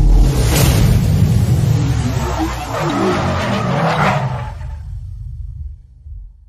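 Logo-intro sound effects: a sudden loud rumbling whoosh with sweeping swishes over a deep low rumble, dying away in the last second or two.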